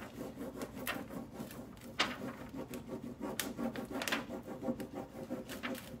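Décor transfer sheet being rubbed down onto a painted board: irregular dry rubbing and scratching strokes, a few sharper ones about one, two, three and a half and four seconds in, as the floral image is worked loose onto the surface.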